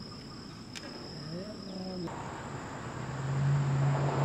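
Crickets or other insects chirring steadily outdoors. A brief gliding voice or animal call comes about halfway through, and a steady low hum starts about three seconds in.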